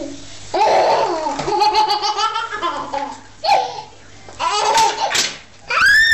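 Baby laughing hard in several bouts, ending in a high-pitched squeal near the end.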